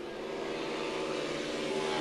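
Speedway motorcycles' single-cylinder engines running hard as the riders slide through a bend, a steady droning note that slowly grows louder.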